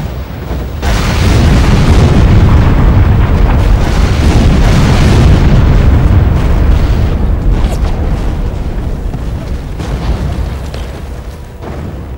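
A barrage of artillery shell explosions rumbling together into a loud, heavy roll that swells about a second in, stays loudest through the middle and slowly fades, with a few separate booms near the end. These are shore-battery shells bursting around warships, with music underneath.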